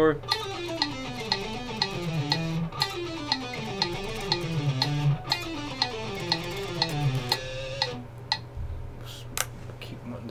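Electric guitar playing a picked scale-sequence exercise, the notes running down in repeated stepwise groups. The playing stops about eight seconds in.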